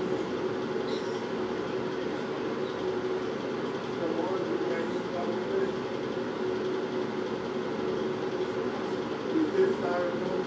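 A steady low hum with faint, muffled voices in the background, and a brief louder sound near the end.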